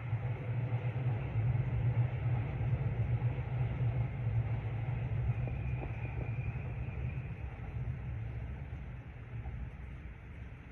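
Electric commuter train running past at a distance, a low rumble that is strongest in the first few seconds and eases off toward the end. A faint high tone rides over it midway.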